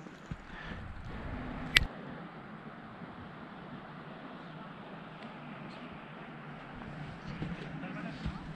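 Faint, steady outdoor background noise with one sharp click a little under two seconds in.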